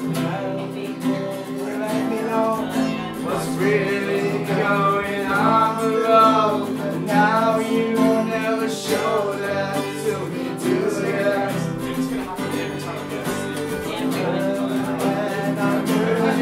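Acoustic guitars strummed together in a live acoustic song, with a man singing over them.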